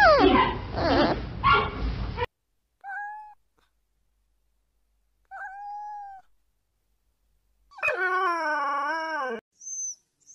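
A giant panda's short, pitch-bending calls over a noisy background, ending abruptly after about two seconds. Then a cat meows: two short meows a couple of seconds apart, and a longer wavering meow that falls at the end. Right at the end comes a dog's high-pitched whimper.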